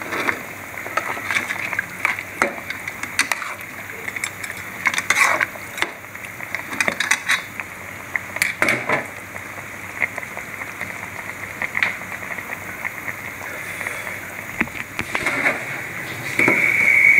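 A ladle clinking and scraping irregularly against a metal cooking pot while a simmering quail masala gravy is stirred, over a steady hiss from the bubbling pot.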